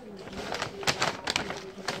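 A low hummed murmur from a man's voice, with several sharp clicks and taps in the second half.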